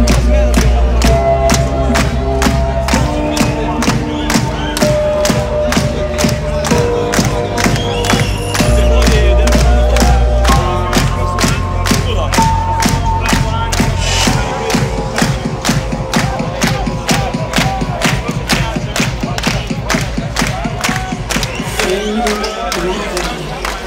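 Loud live electronic dance music over a festival sound system, with a steady kick-drum beat about twice a second, heavy bass and a stepping melodic line. A large crowd cheers and sings along over it.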